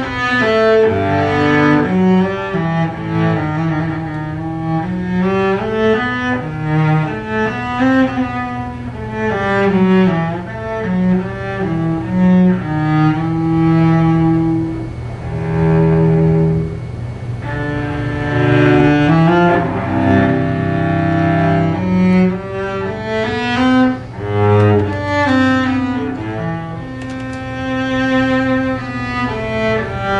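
Solo cello played with the bow: a flowing melodic passage of connected notes, with a long held low note about halfway through.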